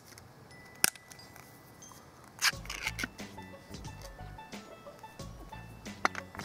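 Ring-pull tin of venison terrine being opened: a sharp click about a second in as the ring is lifted, then a rasping tear of thin metal around two and a half seconds in as the lid is peeled back, followed by a few light clinks, over soft background music.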